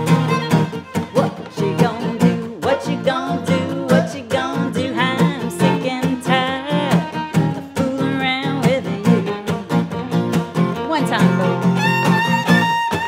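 Fiddle playing an instrumental break over acoustic guitar strummed in a steady, percussive rhythm with muted strings, in B flat.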